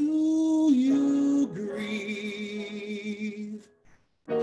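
A man singing a slow phrase of long held notes with vibrato, stepping down in pitch about a second and a half in, then stopping near the end.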